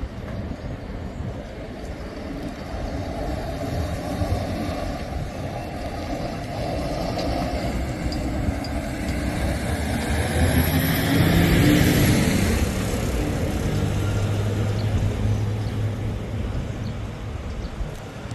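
City street traffic, with a heavy dump truck passing close by; its engine is loudest about ten to twelve seconds in. A steady low engine hum follows.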